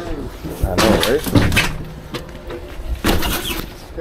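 Tires being handled into a cargo van: a few sudden thumps and scrapes against the van's body, the first pair about a second in and another about three seconds in, with a man's voice speaking briefly.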